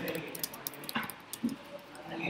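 Computer keyboard typing: scattered key clicks as text is entered, with a couple of short, low vocal sounds about a second in.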